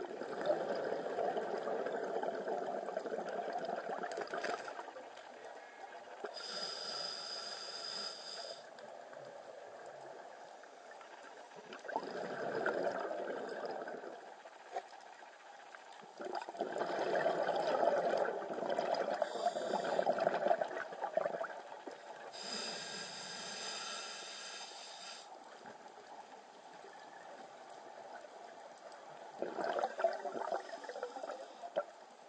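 Scuba diver breathing through a regulator underwater. Two inhalations through the demand valve come as hisses of about two seconds each, and several longer exhalations come as gurgling bubble bursts.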